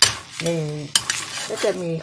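Metal spatula stirring snails in their shells through curry broth in a pan, with two sharp clinks against the pan, one right at the start and one about a second in.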